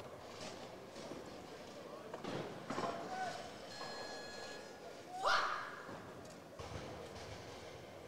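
Hushed arena crowd with scattered shouts of encouragement from spectators; the loudest is a single rising call about five seconds in.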